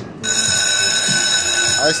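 Slot machine's jackpot bell ringing steadily after a $1,540 win, several high tones held together without change; it starts about a quarter second in and is joined by a man's voice at the very end.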